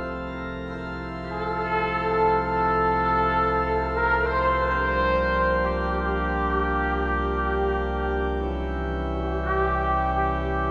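Slow, spacious jazz: long held trombone and trumpet lines over a steady low drone and sustained chords, swelling in loudness about a second in.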